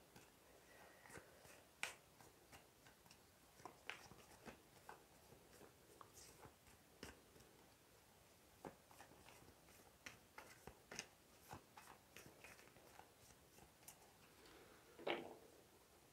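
Near silence, broken by faint, scattered clicks and light snaps of a tarot deck being handled and shuffled in the hands.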